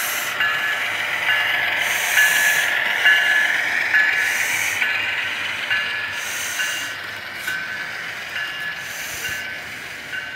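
Model train running around a tabletop layout: the locomotive's electric motor and wheels give a whine that breaks up about once a second, with a hiss about every two seconds. The sound fades over the second half as the train moves off.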